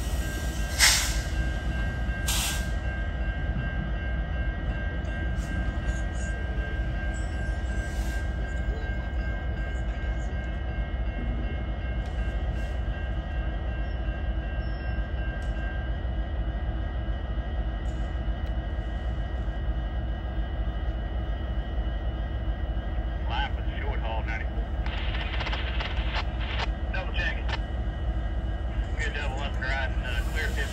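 Diesel freight locomotive running steadily while switching in a yard: a heavy low engine drone under a thin steady whine that stops about halfway. There is a sharp knock about a second in and another soon after.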